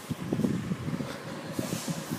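Irregular low rumble of wind buffeting a handheld camera's microphone, mixed with handling knocks as the camera is moved.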